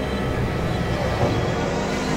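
Experimental electronic drone music: several sustained synthesizer tones held over a dense, rumbling noise bed, with no beat. A new low tone comes in a little past halfway.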